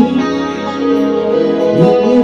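Heavy metal band playing live: electric guitar, bass, drums and keyboard together, loud and dense, with a rising pitch slide near the end.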